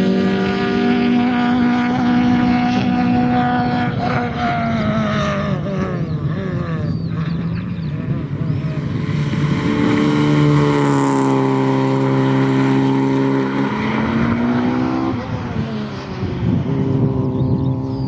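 Peugeot 106 XSi's four-cylinder petrol engine revving hard under acceleration, its note rising and falling with throttle and gear changes. It is loudest as the car passes close about ten to eleven seconds in, and the pitch drops sharply about fifteen seconds in.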